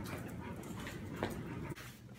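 A dog panting close to the microphone, with a faint click about a second in; the sound drops away shortly before the end.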